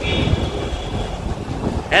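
Street traffic with wind buffeting the microphone, a steady low rumble. A thin steady high tone sounds for about the first second.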